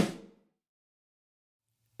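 A single snare drum hit played through a convolution reverb built from a room impulse response recorded with a sine sweep. Its short room tail dies away within about half a second.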